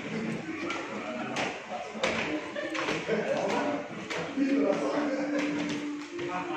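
Indistinct chatter of several people talking in a large echoing indoor hall, with scattered sharp taps and knocks.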